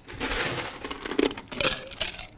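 Ice cubes scooped from an ice bucket and dropped into a stainless steel cocktail shaker cup, clattering and clinking, with a few sharp rattles in the second half.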